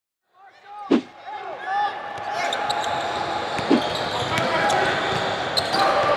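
Basketball game sound in a gym: a ball bouncing on the hardwood about a second in and again near four seconds, with short sneaker squeaks early on and steady crowd chatter filling the hall. It fades in from silence at the start.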